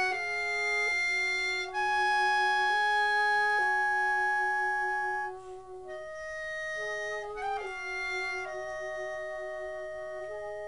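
Slow, melancholy woodwind passage led by a clarinet playing long held notes, with a brief break a little past halfway before a softer phrase.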